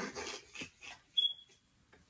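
A man laughing in breathy, unvoiced bursts that fade out, with a short high squeak a little over a second in.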